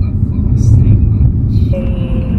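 Low, steady road and engine rumble heard from inside a moving car's cabin.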